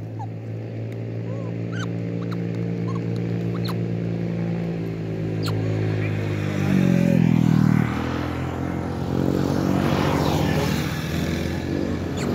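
A motor vehicle engine runs steadily, its hum growing louder, changing pitch and loudest about seven seconds in. A few short high chirps sound in the first few seconds.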